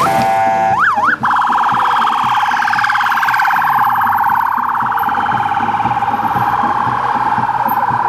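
Vehicle's electronic siren: rapid up-and-down whoops for about the first second, then a steady, fast-pulsing wail for the rest.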